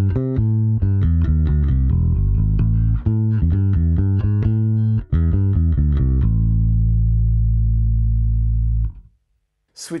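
Electric bass guitar played through a Bergantino Super Pre bass preamp with no speaker profile selected. It plays a quick run of low notes for about six seconds, then holds one low note for about three seconds until it is cut off abruptly.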